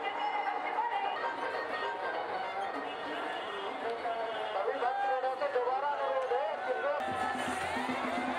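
Singing voices over music amid a crowd, with chatter mixed in; the sound changes abruptly about seven seconds in.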